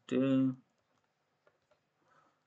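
A spoken word at the start, then a few faint keyboard clicks about a second and a half in.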